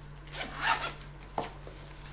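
Handling noise from music gear being laid out: a brief rubbing scrape about half a second in, then a single sharp click.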